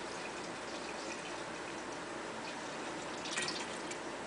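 Fruit juice pouring in a thin steady stream from a glass bottle into a large glass jar of mashed fruit, faint throughout, with a brief louder moment a little past three seconds in.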